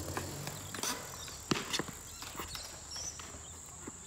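Footsteps and a skateboard knocking and clacking on concrete: scattered light taps and knocks, the loudest about one and a half seconds in. A steady high-pitched tone runs underneath.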